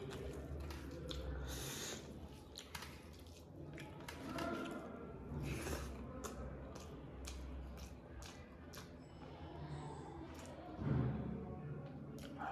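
Close-miked eating by hand: wet chewing and squishing of rice and chicken, with many small sharp mouth clicks. A brief louder sound comes near the end.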